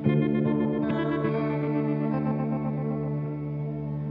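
Guitar played through the Universal Audio Astra Modulation Machine pedal in its bucket-brigade chorus mode: chords struck at the start and again about a second in, then left ringing with a shimmering chorus.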